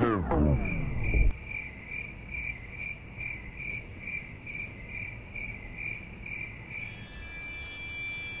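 A sung Bollywood film song cuts off about a second in. Crickets chirp steadily after it, about two chirps a second: the comic cue for an awkward silence.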